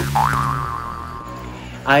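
A comic 'boing' sound effect: a quick upward slide in pitch that settles into a long, fading tone, over a low steady music bed.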